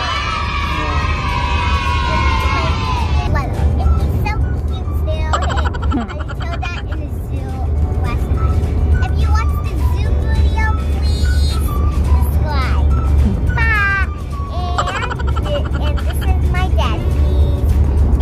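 Steady low road and engine rumble inside a moving Toyota car's cabin, with music and children's voices over it.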